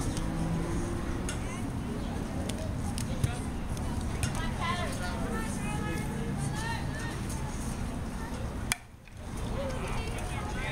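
Spectators' chatter with a single sharp knock about three seconds in. Near the end comes the crack of a bat hitting a baseball.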